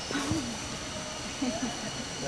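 Brief, indistinct voices of people close by, with two short bursts of talk, one near the start and one in the second half, over a steady background hiss.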